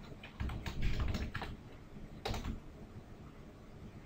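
Computer keyboard being typed: a quick run of keystroke clicks through the first second and a half, then one more click a little after two seconds.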